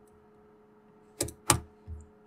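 Computer keyboard keystrokes: two sharp key presses about a third of a second apart, a little over a second in, then a softer tap near the end.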